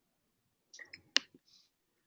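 A few short clicks of a computer mouse, the sharpest about a second in.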